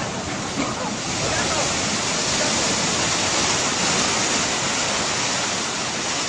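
Fast, swollen floodwater of a river in spate rushing, a steady, even, loud rush of water.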